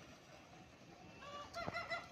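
A rooster crowing once, the crow starting a little over a second in and holding under a second.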